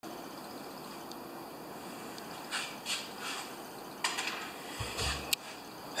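Quiet room tone with a few soft rustling handling noises about halfway through and a sharp click near the end.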